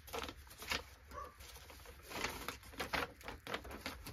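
Paper rustling in short handfuls as sheets of paper targets and paster stickers are shuffled and sorted.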